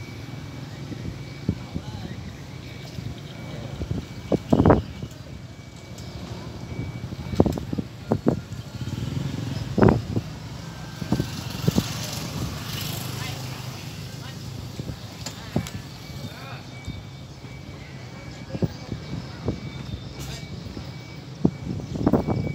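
Outdoor ambience with a low steady hum and distant voices. A handful of sharp knocks cut through it, the loudest about five and ten seconds in.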